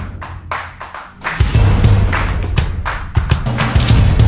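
Short electronic music sting for an animated subscribe graphic: a deep bass note under a quick run of sharp clicks and swishes. It dips briefly about a second in, then comes back.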